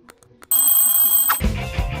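A subscribe-animation sound effect: a short, bright ringing bell tone starts about half a second in and stops about a second later. It is followed by upbeat rock-style background music with a steady beat.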